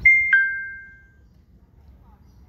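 A two-note electronic chime, a higher note then a lower one a third of a second later, ding-dong, both ringing out and fading within about a second.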